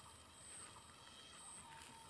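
Near silence: faint outdoor background with a faint high-pitched tone coming and going.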